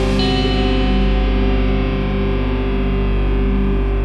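Hard rock recording: a distorted electric guitar chord through effects, struck once just after the start and then held, ringing out and slowly fading without drums.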